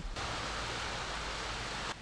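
Beach ambience: a steady, even rush of surf washing on the shore. It cuts in and out abruptly.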